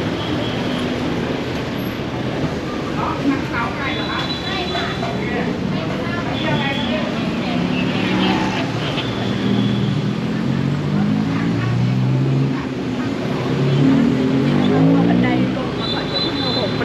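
Busy city street ambience: car and motorbike traffic running with people talking nearby. A few short high-pitched tones sound about a third of the way in and around the middle.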